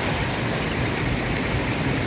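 Shallow stream water rushing steadily over rocks.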